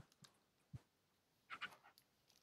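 Near silence, with a faint click about three-quarters of a second in and a few soft breath-like sounds near the end.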